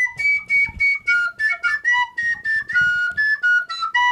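A recorder played by an unpractised player: a quick run of short notes, about four a second, stepping up and down in pitch as different fingers are lifted. It doesn't sound very good.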